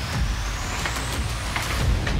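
Rumbling handling noise with several knocks on a computer microphone as the camera and computer are moved and adjusted. A faint high tone rises in pitch underneath.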